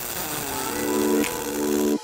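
Aluminium pulsed MIG welding arc giving a steady crackling hiss, with background music of held notes over it; both cut off sharply at the very end.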